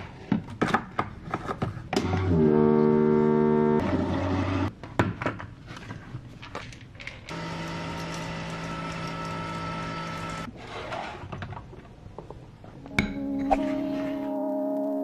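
Keurig single-serve coffee maker brewing. Clicks and knocks as the mug is set and the machine is worked, then a loud droning hum for about a second and a half. Then a steady hum with a hiss of coffee pouring into the mug for about three seconds, followed by more clicks.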